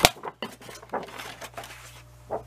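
A sharp plastic click as a sliding paper trimmer is handled, followed by faint light taps and rustling as sheets are moved on it.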